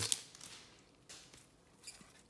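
Trading cards being slid and flipped through by gloved hands: faint rustling of card stock, with a soft tick about a second in and a sharper click near the end.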